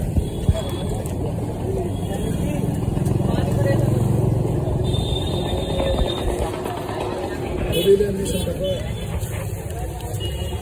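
Street traffic noise with background voices; a vehicle's low rumble swells and fades in the middle.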